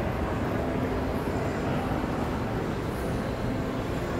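Steady low rumble of a shopping mall's indoor background noise, an even hum with no distinct events.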